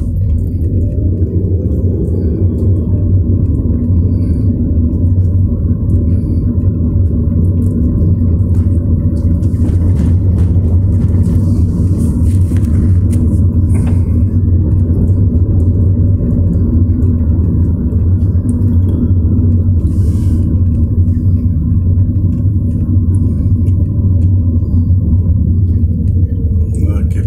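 Steady low rumble of a car driving along a town road, heard from inside the cabin: engine and tyre noise.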